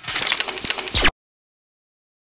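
Designed digital glitch sound effect for a logo reveal: about a second of dense, crackly, stuttering digital noise ending on a low hit, then cut off abruptly.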